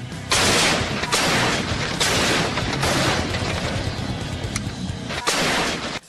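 A battery of towed field howitzers firing: about five heavy shots in irregular succession, each trailing off slowly.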